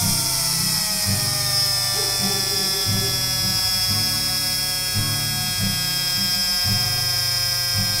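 Small brushed DC drill motor spinning free with a high whine whose pitch slides steadily down as it slows. The current limit on its bench supply is being wound down, so the supply is in constant-current mode and pulls the voltage down. A low buzz cuts in and out underneath.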